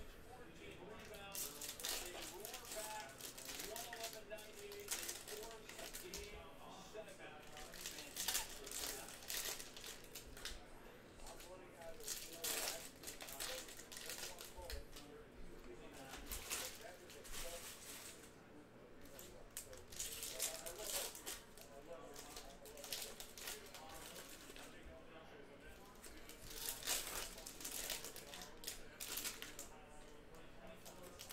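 Panini Mosaic football trading cards being handled, shuffled and stacked by hand, along with crinkling foil pack wrappers: a continuous run of small clicks, slides and rustles.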